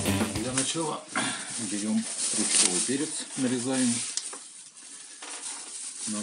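The tail of rock music cutting off at the start, then a voice speaking in a few short phrases over a faint steady hiss, which carries on alone for the last couple of seconds.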